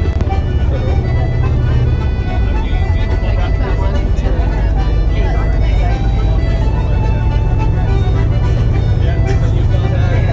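Steady low rumble of a tour coach's engine and road noise inside the cabin, with passengers' voices and music over it.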